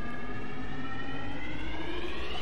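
A sustained pitched tone with many overtones, gliding slowly and then faster upward in pitch over a low noise bed, part of an experimental noise-music track.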